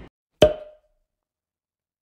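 A single short knock-like pop about half a second in, with a brief ringing tone that quickly dies away, then dead silence.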